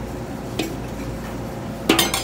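Steady background hum with a few light metal clinks from utensils and stainless steel hotel pans being handled, the sharpest just before the end.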